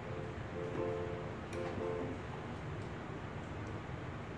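Mini Grand virtual piano in Pro Tools, played from a MIDI keyboard: two chords, the first about half a second in and the next about a second later, over a looping drum beat.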